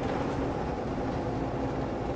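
Steady engine and road rumble heard from inside the cabin of a moving city bus.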